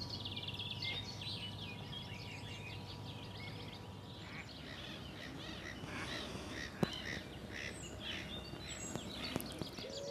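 Several birds chirping and singing, with many short calls overlapping, over a faint steady hum. A single sharp click about seven seconds in.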